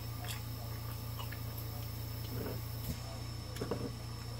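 Quiet room tone: a steady low hum with a few faint, scattered clicks and two brief faint mumbles.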